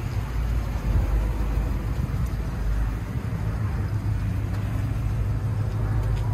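A vehicle engine idling close by: a steady low rumble.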